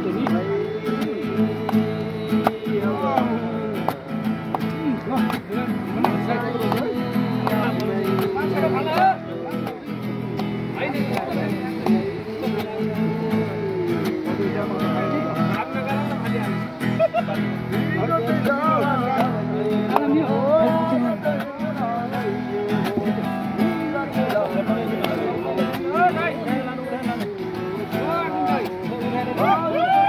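Acoustic guitar strummed while men sing a song along with it.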